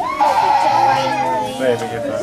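A high, wavering, bleat-like cry held for about a second, then tailing off.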